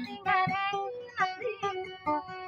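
A woman singing with her own acoustic guitar accompaniment, holding wavering notes over the plucked strings.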